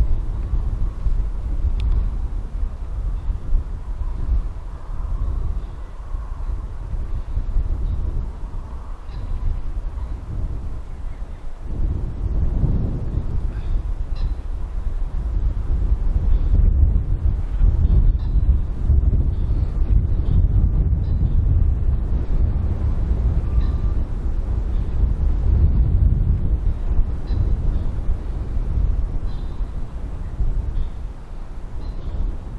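Wind buffeting the microphone: a low, uneven rumble that grows stronger from about twelve seconds in. A few faint, short high calls sit above it.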